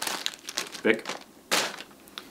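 Thin plastic bag crinkling as it is pulled off a part and tossed aside: a few short rustles, the loudest near the end.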